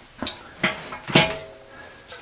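Three short metallic clinks and knocks about half a second apart, the last with a brief ring, from a deep socket and ratchet adapter on a half-inch drill being handled and fitted.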